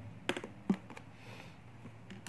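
A few short, light clicks and taps in the first second as ballpoint pens are handled against paper and the desk, over a faint steady low hum.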